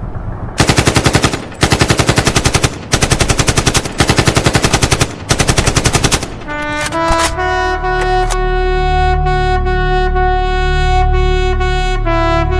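Automatic gunfire in several loud bursts of rapid shots, each under about a second long. About six seconds in, brass music comes in with a quick run of notes and then held chords.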